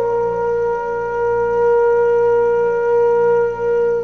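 Instrumental background music: a wind instrument holds one long steady note over a low drone, breaking off just before the end.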